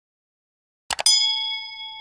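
Two quick mouse-click sound effects about a second in, then a bell ding that rings on and slowly fades: the notification-bell sound of an animated subscribe-button end screen.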